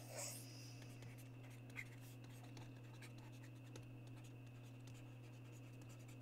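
Faint pen strokes on a writing tablet as a circle and two words are written, over a steady low electrical hum.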